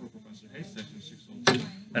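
Faint rubbing and handling of IV tubing as its plastic access port is scrubbed with an alcohol prep pad, then one sharp click about one and a half seconds in.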